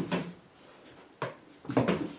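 A cat leaping at a wall: a few short thumps and scuffs of its paws against the wall and floor, bunched near the end.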